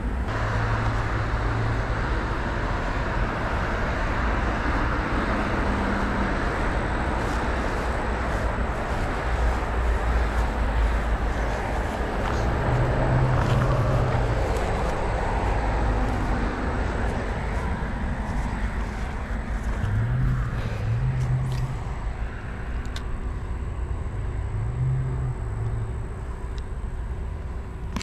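Road traffic running steadily, a constant wash of tyre and engine noise with a few vehicles passing closer and rising above it, loudest around the middle.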